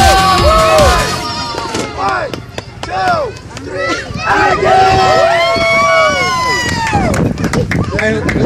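A pop song with a steady beat stops about a second in. Then a group of young children shout and cheer, their high voices rising and falling, mixed with adults' voices.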